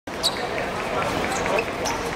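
Football being kicked and bouncing on a hard outdoor court, with a sharp hit just after the start, and players' voices around it.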